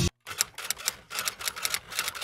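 Typewriter sound effect: a run of quick, irregular key clicks as a caption is typed onto the screen.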